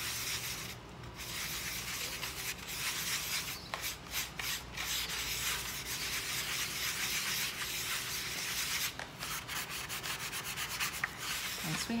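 Paintbrush stirring watered-down ceramic glaze in a disposable bowl: a steady rubbing of the brush against the bowl, broken briefly twice.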